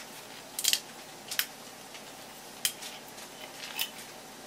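Four short, sharp clicks spread across a few seconds, the first a quick little cluster, over a faint steady background hiss.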